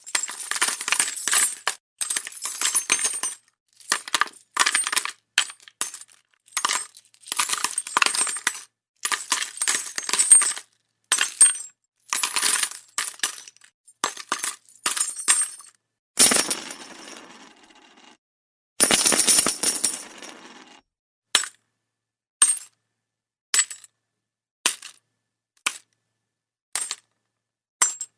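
Rapid bursts of metallic jingling and clinking for about sixteen seconds, then two longer crashing sounds that die away, then single sharp clicks about once a second.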